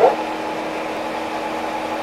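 Metal lathe running steadily, spinning a POM (acetal) rudder bushing blank while the cutting tool puts a small chamfer on its edge: an even motor hum with a low steady tone. A short laugh right at the start.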